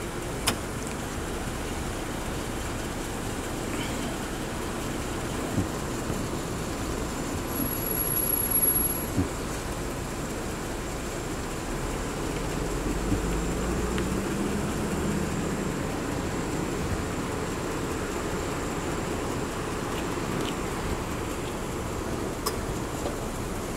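Steady street noise with a vehicle engine's low rumble, swelling about twelve seconds in and fading a few seconds later, with a few faint clicks.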